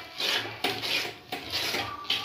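Steel spatula scraping the bottom and sides of an iron kadhai while stirring thick semolina halwa, in repeated rasping strokes about two a second.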